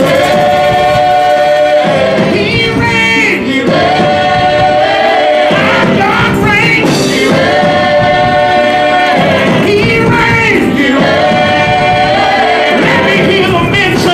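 Live gospel choir singing a praise song, in four long held phrases with short breaks between them.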